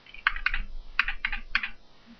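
Computer keyboard typing: a quick run of about eight keystrokes in two short bursts, entering digits into a spreadsheet formula.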